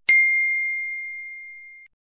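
Notification-bell 'ding' sound effect for a subscribe-button overlay as its bell icon is clicked: one clear bell tone that fades for nearly two seconds, then cuts off suddenly.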